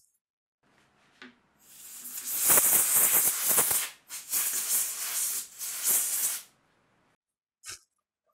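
Compressed-air blow gun blowing dust out of milled fretboard inlay pockets: a hiss that builds over about two seconds and holds, then a few shorter blasts that stop a little after halfway.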